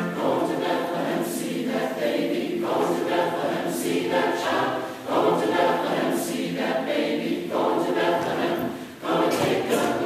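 Large mixed choir of men and women singing together, with short pauses between phrases about five and nine seconds in.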